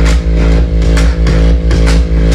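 A produced electronic beat playing back from a studio setup: regular kick and clap hits over a darkened sampled loop, with a loud, deep sustained bass line just added on top.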